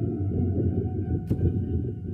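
Low rumbling drone of a film soundtrack, with faint steady high tones above it and a single sharp click a little over a second in.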